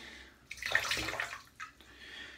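Brief splash of water in a bathroom sink from about half a second in, lasting under a second, as a synthetic shaving brush is wetted under the tap.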